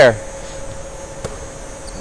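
Gymnasium room tone between words: a steady faint hiss with a thin hum, and a single faint click about a second in, just after a man's voice trails off.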